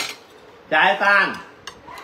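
Metal spoons and forks clinking lightly against plates and a bowl while eating, with a couple of sharp clicks near the end. A short spoken phrase is the loudest sound, about a second in.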